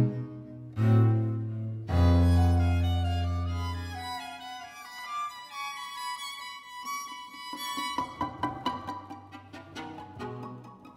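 String quartet playing without the voice. It opens with three heavy low notes, the third held and fading over about two seconds, then high held notes take over. Near the end come quick repeated short notes.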